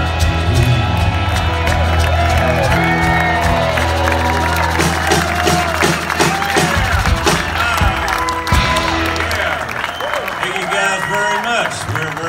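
Live band of electric guitar, acoustic guitar and drum kit holding the final chord of a rock song over a steady low drone, then closing it out with a few sharp drum hits. Near the end the audience cheers, whoops and claps.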